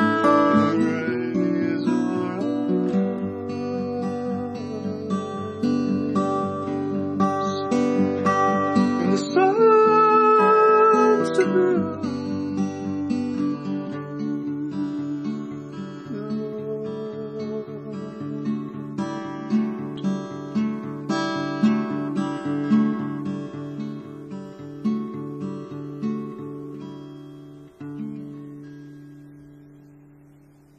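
Solo acoustic guitar playing an instrumental passage of picked notes. In the second half it settles into a steady repeating figure over a held bass note and grows gradually quieter, the last notes ringing away at the end.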